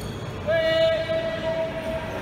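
A horn sounds one long, steady note, starting abruptly about half a second in and holding for about a second and a half.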